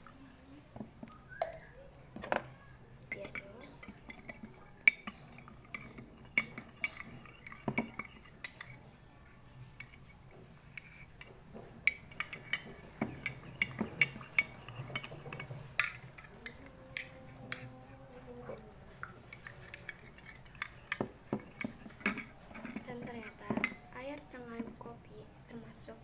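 A metal spoon stirring coffee and water in a glass tumbler, clinking sharply against the glass many times at an irregular pace.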